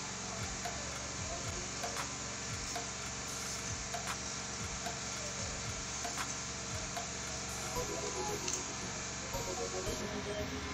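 Scissors trimming Ankara fabric wrapped around a cardboard strip: a few faint, separate snips over a steady hiss.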